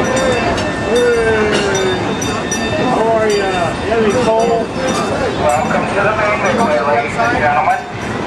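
Park train rolling slowly with scattered clicks from its wheels and cars, under the loud, overlapping chatter and calls of many people close by.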